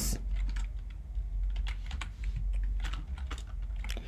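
Typing on a computer keyboard: a string of light key clicks at an uneven pace, over a faint low hum.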